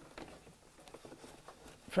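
Faint, irregular rustling and light tapping of stiff burlap being handled and pushed into place under a sewing machine's presser foot.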